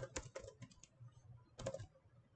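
Computer keyboard typing: a quick run of faint keystrokes at the start, then another short burst a little past halfway.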